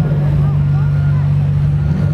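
Engines of compact demolition derby cars and a skid steer idling together, a steady low drone.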